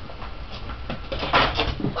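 Scuffing and knocking against a punching bag as a cat scrambles on top of it: a few light clicks, then a loud burst of knocks and scrabbling about a second and a half in.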